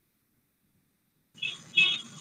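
Near silence on an online call for over a second, then a participant's microphone opens with a faint hiss and two short soft sounds, about a third of a second apart, just before speech.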